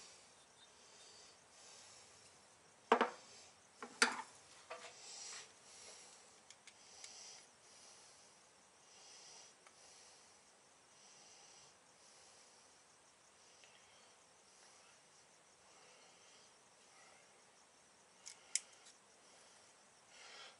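Quiet handling of small metal parts: a steel piston pin and digital calipers clicking and tapping as the pin is slipped out of a forged piston and measured. There are two sharp clicks about a second apart a few seconds in, a few softer taps, and a quick pair of clicks near the end.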